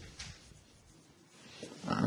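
A pause in a man's lecture: quiet room tone, then near the end a short sound of the speaker drawing breath before he speaks again.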